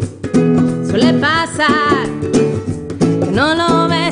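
A live acoustic song: a woman singing over a strummed nylon-string classical guitar, with hand-played bongos keeping the rhythm. The voice drops out briefly at the start and comes back about a second in and again near the end.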